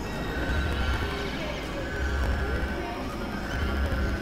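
Experimental electronic noise music from synthesizers: a dense, noisy drone with a low throb that swells about every one and a half seconds, a held high tone that comes and goes, and short gliding tones over it.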